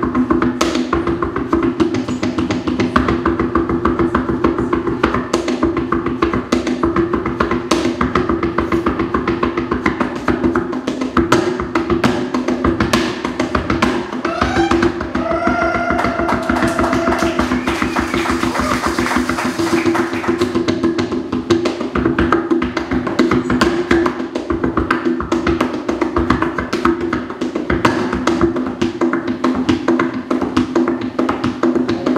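Tap shoes striking a wooden floor in quick, dense rhythms of sharp clicks, played over music with a steady low drone.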